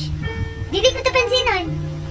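A high-pitched voice speaking or singing in short bending phrases over background music with a steady low tone.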